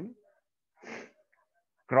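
One short breath drawn in sharply, about a second in, between spoken phrases.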